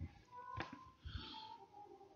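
Faint room sounds on an open video-call microphone: a sharp click a little over half a second in, then a short soft breath just after a second.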